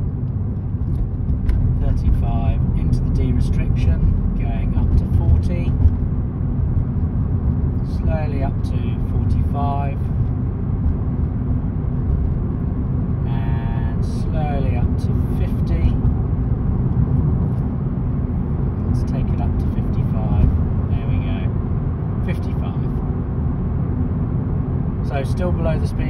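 Steady engine and road drone inside a Ford car's cabin while it is driven at a constant moderate speed, with short spells of faint talking over it.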